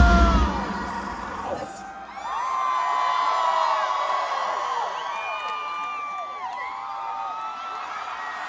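A heavy metal band's live song stops within the first second. Then a large concert crowd cheers and screams, with many high whoops and shrieks overlapping.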